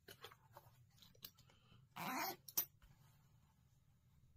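Small clicks and taps of an acrylic ruler and marking pen on fabric over a cutting mat. About two seconds in comes a short rising whine from a pet, followed by a sharp click.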